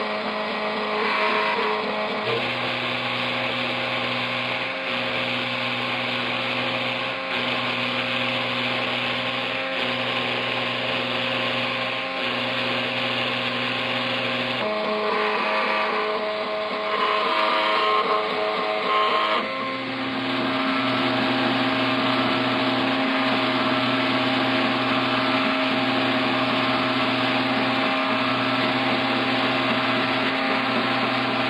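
Homebrew three-axis CNC mill engraving a copper-clad circuit board with an engraving bit: the spindle runs steadily while the axis servo motors whine. The tones shift as the machine changes direction, about 2 s in, then again around 15 and 20 s, and the low hum breaks briefly every couple of seconds.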